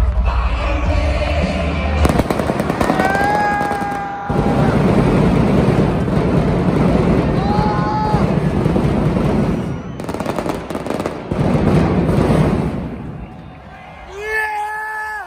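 Stage pyrotechnics firing in an arena: rapid crackling bangs of fireworks starting about two seconds in, with a short break near four seconds, over loud arena music and a shouting crowd. The bangs die away near the end.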